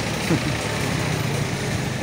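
Street traffic: a small motorcycle engine running close by, with other vehicles idling in the road. A steady hum with no sudden events.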